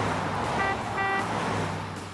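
Road-traffic sound effect: a steady rush of traffic with a car horn giving two short toots about a second in, fading out near the end.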